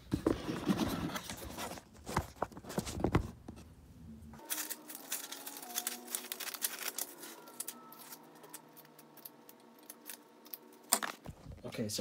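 A phone being set down with knocks and rustling, then crackling and tearing as the excess glitter heat-transfer vinyl is peeled away from its clear carrier sheet.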